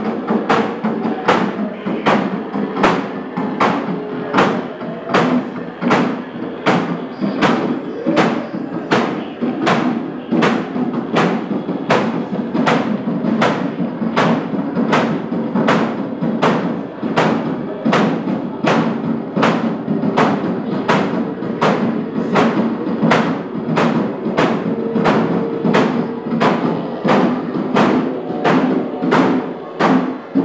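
Live experimental sound performance: an even, unbroken beat of sharp knocks, about one and a half a second, over a sustained low drone.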